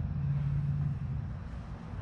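A steady low mechanical rumble with a hum, louder in the first second and easing a little after it.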